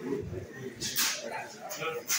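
Voices murmuring in a room, with short bursts of paper rustling as ballot papers are handled, the loudest about halfway through.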